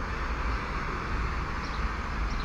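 FM radio static hissing from a mobile phone's small loudspeaker, the set tuned to 88.7 MHz with no clear station coming through. A steady low rumble runs underneath.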